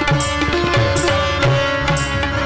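Instrumental passage of a Hindi devotional bhajan: tabla strokes in a steady rhythm over held notes from harmonium and electronic keyboards.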